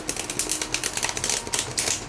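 A rapid, irregular run of sharp scratching clicks that cuts off near the end.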